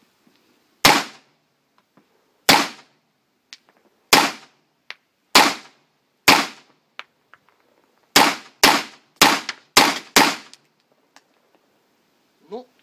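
Fort-12G gas pistol firing ten 9 mm P.A.K. Ozkursan blank rounds, each a sharp report. The first five are spaced about a second or more apart, and the last five come quickly, about two a second. Every round goes off with no misfire: the new mainspring has cured the light primer strikes.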